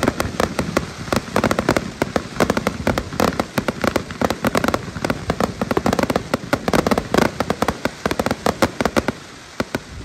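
Fireworks display with aerial shells bursting overhead: a dense, rapid run of sharp bangs and pops that thins out about nine seconds in.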